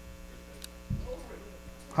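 Steady electrical mains hum in the sound system, with a brief low thump about a second in.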